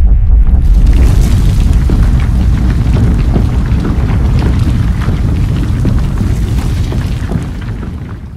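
Cartoon building-collapse sound effect: a deep, heavy rumble full of crackling debris that takes over from the music about half a second in and slowly fades toward the end.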